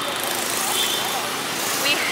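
Steady street traffic noise, an even background rush, with faint voices under it.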